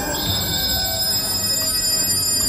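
Haunted-house ambient sound effects: a steady droning background with sustained high tones, one of which comes in just after the start.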